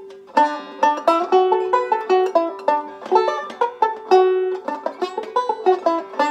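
Resonator banjo picked in a fast pentatonic lick: a quick run of bright plucked notes, several a second, with one high note coming back again and again like a drone.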